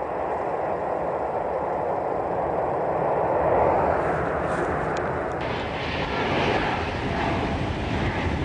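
Jet airliner engines heard as a steady rushing noise that swells a little past the middle, then turns brighter and hissier in the second half.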